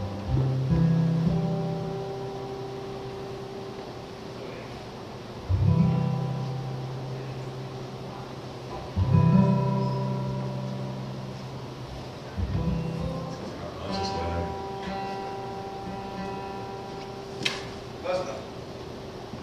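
Solo acoustic guitar played through a PA: single chords struck a few seconds apart, each left to ring out and fade. A sharp click near the end.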